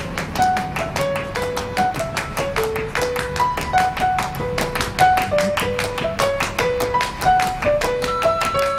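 Background music score: a quick, steady tapping beat under a bouncy melody of short, separate notes.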